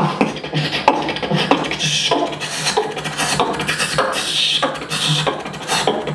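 Solo human beatboxing amplified through a cupped handheld microphone: a steady beat of deep bass kicks with snare and hissing hi-hat sounds made by mouth.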